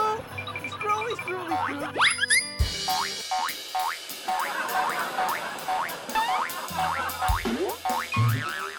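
Edited-in comedy sound effects over bouncy background music: a fast rising whistle-like sweep that ends in a thump about two and a half seconds in, then a quick run of short, bouncy repeated notes, and another rising sweep with a thump near the end.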